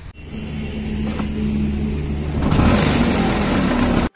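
Scooter engine running while riding, with wind rushing over the microphone and growing louder from about two and a half seconds in as it picks up speed.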